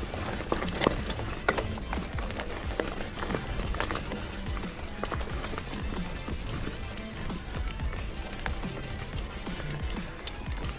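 Background music over the rolling rumble of a mountain bike on a gravel road, with many small clicks and rattles from the tyres on loose stones and the bike shaking.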